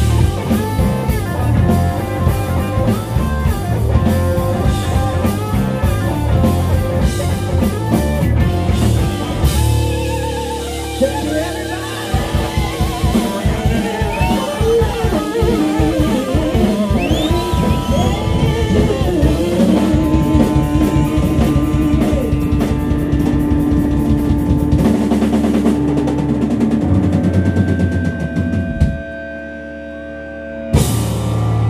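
Live rock band playing loud: drum kit and electric guitars, with held and bending guitar notes in the middle. The band stops abruptly near the end.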